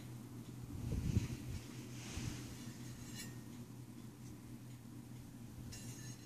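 Quiet room tone with a steady low hum, a few soft handling bumps in the first second or so and a small click about three seconds in.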